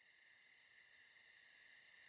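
Faint, steady chorus of crickets, several high pitches held together without a break.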